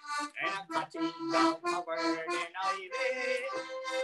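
Accordion (bosca ceoil) playing a traditional Irish tune: a run of short melody notes over a few longer held lower notes.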